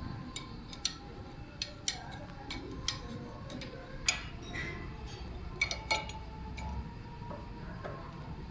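Light metallic clicks and clinks of small steel parts and a spanner being worked by hand on the hub of a pipe bending machine's spur gear. About a dozen sharp, irregular ticks, a few ringing briefly.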